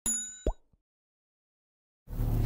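Sound effects of an animated YouTube subscribe button: a bright, ringing ding that dies away over about half a second, then a quick plop that rises in pitch.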